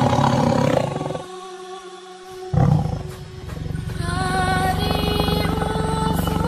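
A tiger roaring twice over background music. The first roar runs through the first second, and the second comes about two and a half seconds in. After that the music carries on alone, growing fuller.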